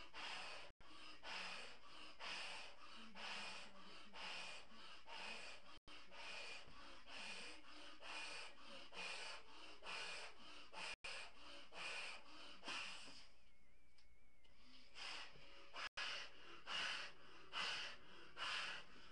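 A man blowing up a large latex balloon by mouth in quick repeated breaths, about two a second, each breath drawn in and pushed into the balloon, with a short pause about three-quarters of the way in. The balloon does not burst.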